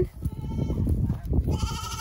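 A goat bleats once: a long, high-pitched call beginning about one and a half seconds in. Before it there is a low, rumbling noise.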